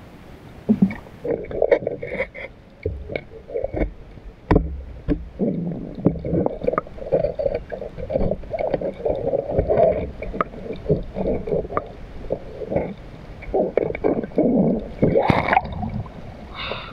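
Muffled, irregular water sloshing and gurgling in a steady stream of short bursts, with a few sharp knocks.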